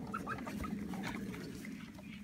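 Faint animal calls, a few short ones in the first half second, over a low steady background.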